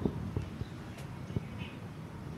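Faint background noise with several soft, irregular knocks and a few clicks.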